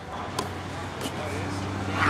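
Indistinct voices of children in the background, with three faint short thumps about half a second apart over a steady low hum.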